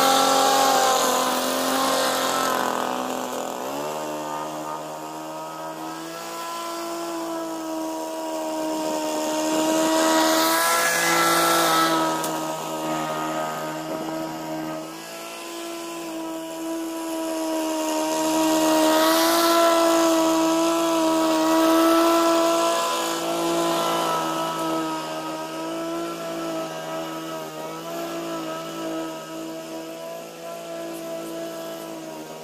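Victa 505 Pro petrol lawn mower engine running steadily while mowing. Its pitch steps up about four seconds in, and it grows louder twice, around ten and twenty seconds in. It runs sweetly after a carburettor tune.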